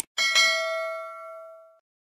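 Subscribe-button animation sound effect: a mouse click, then a notification-bell ding that rings out and fades over about a second and a half.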